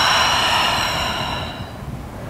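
A long audible exhale through the mouth, a breathy hiss that fades out after about a second and a half.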